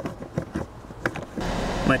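A few light clicks and knocks from handling an OBD2 code reader's plug at the diagnostic port under the dash, then, about one and a half seconds in, the steady low hum of the Honda Odyssey's 3.5-litre V6 idling, heard from inside the cabin.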